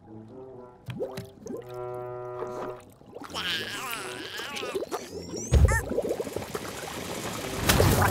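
Cartoon background music with liquid sound effects of slime dripping and gurgling into a potion, a heavy low thump about five and a half seconds in, and a loud rush of sound near the end as the brew erupts.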